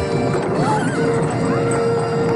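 Film score music with a long held note coming in about halfway, over horses neighing and the clatter of hooves.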